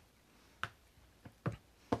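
Four light clicks of a plastic Citadel paint pot being handled, its flip-top lid snapped shut.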